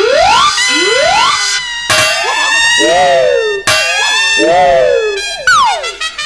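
Electronic comic sound effects: several tones slide up in pitch in the first second and a half, then two wavering, siren-like wails rise and fall over held high tones, and a quick downward slide comes near the end.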